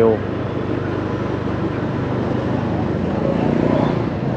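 Motorbike engine running steadily at low speed, with street traffic noise around it, growing slightly louder near the end.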